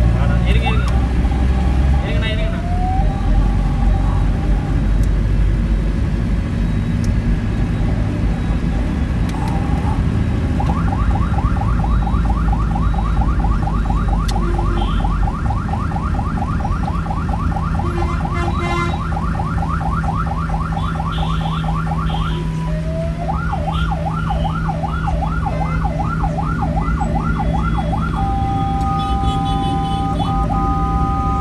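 Ambulance siren heard from inside the moving ambulance over steady engine and road noise. A third of the way in a rapid yelp starts and runs for about ten seconds. After a short break it switches to slower sweeps of about two a second, then gives way near the end to a steady two-note horn blast.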